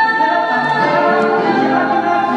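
Mixed vocal group of men and women singing a pop song together in harmony, several voices holding chords.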